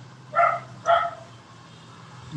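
A dog barking twice, about half a second apart, over a steady low hum.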